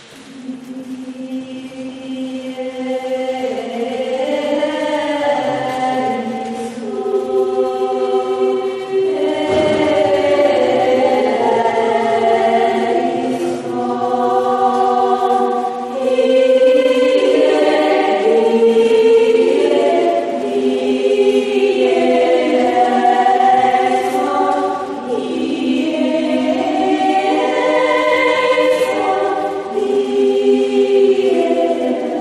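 Mixed polyphonic choir singing unaccompanied in several parts, with long held chords. The singing begins at the very start and swells over the first few seconds, then eases briefly twice between phrases.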